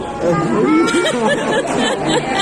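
Several people's voices talking and exclaiming over one another, getting louder a moment in, with no clear words.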